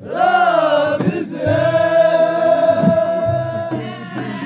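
Ahidous, the Amazigh collective chanted song: a group of voices singing together, a short phrase that bends in pitch and then one long held note.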